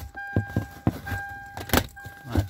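A few short clicks and knocks from handling the plastic lower dash trim panel under the steering wheel, the sharpest near the end. Under them a steady high electronic tone comes and goes.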